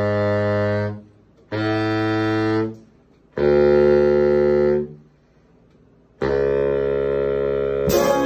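Big band saxophone and trombone section playing held chords: three chords of about a second each, separated by short silences, then a long sustained chord that begins about six seconds in.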